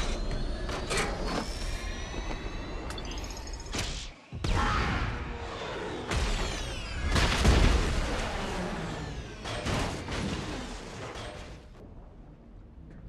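Action-film sound effects: a rising engine whine from the Green Goblin's glider cuts off abruptly about four seconds in. A heavy explosion follows, with falling whooshes and crashing debris, and it dies away near the end.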